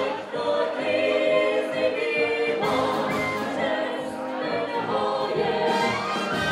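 Czech brass band (dechová hudba) playing a song, with several singers singing together in long held phrases over the band.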